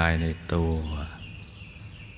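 A man's calm voice giving a Thai meditation talk, ending about a second in, followed by a faint, steady high-pitched tone over low background hiss.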